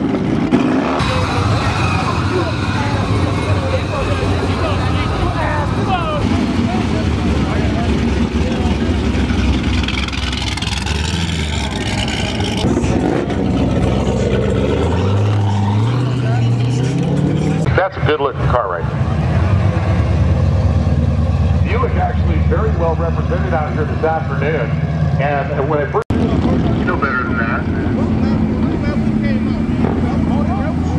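Drag-race cars' engines running and revving in the staging lanes, with people talking over them and a pitch rise about halfway through.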